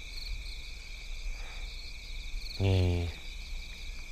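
Crickets chirping steadily in the night background, a continuous high pulsing trill. About two and a half seconds in, a man's voice makes one short, low, held sound of about half a second, louder than the crickets.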